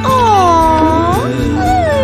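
A long, whine-like vocal that dips and rises in pitch, followed near the end by a shorter falling one, over background music.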